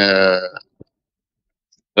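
Speech only: a man's voice draws out one syllable for about half a second and trails off, then there is silence until he speaks again at the very end.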